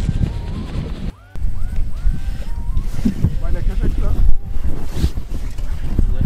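Strong wind buffeting the microphone, a dense low rumble, with snatches of voices in the background. The sound drops out completely for a moment about a second in.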